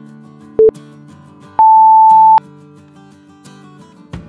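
Interval timer beeps over background music: a short low beep, then about a second later a longer, higher beep marking the end of the exercise interval and the start of rest.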